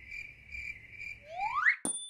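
Crickets chirping in an even, pulsing trill, a night-time sound effect. Near the end, a rising whistle ends in a sharp click and a high ringing ding.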